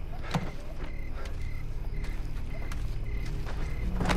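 A car engine idling with a steady low rumble. A faint, short high chirp repeats about three times a second, and there are a couple of soft knocks in the first second or so.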